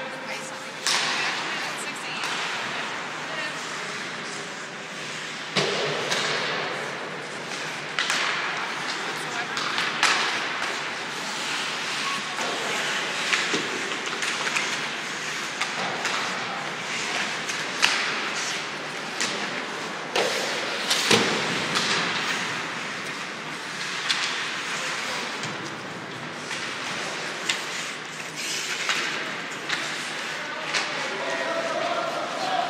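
Ice hockey play in an indoor rink: sharp knocks and thuds of the puck, sticks and bodies against the boards every few seconds, over a steady background of indistinct voices from the stands.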